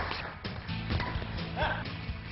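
Background music over a few sharp hits of badminton rackets striking a shuttlecock, with a short high yelp about one and a half seconds in.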